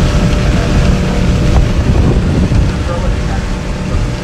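Motorboat underway at speed: the engine's steady drone mixed with the rush of water and wind along the hull, heavy and rumbling in the low end.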